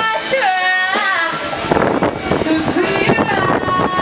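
High-pitched children's voices calling out in long, gliding notes for about the first second, then a busy hubbub of crowd voices and clatter.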